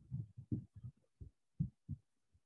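Soft, muffled low thumps at irregular intervals, several a second.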